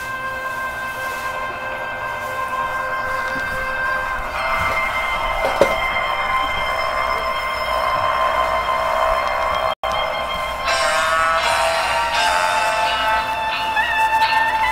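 Instrumental orchestral backing track with long held chords, swelling fuller and louder about four seconds in and again near the end. The sound cuts out for a split second about ten seconds in.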